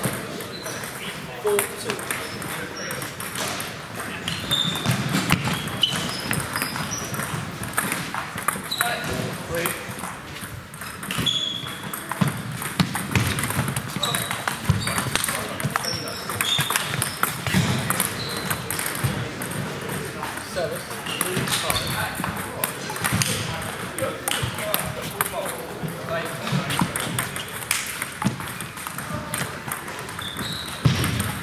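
Table tennis rallies: a celluloid ball clicking repeatedly off bats and the table, in a hall with other tables in play and voices in the background.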